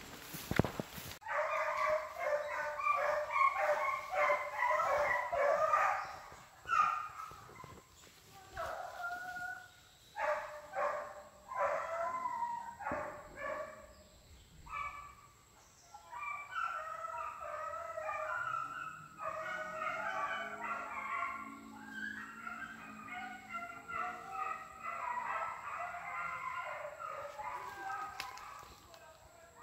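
Hunting dogs barking and yelping in quick overlapping volleys, several at once: a dense bout over the first few seconds, scattered barks through the middle, then steady barking again from about halfway to the end. A brief thump comes just at the start.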